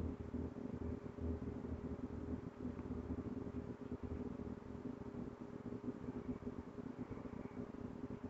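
Quiet steady low hum with faint handling noise from hands working yarn with a crochet hook.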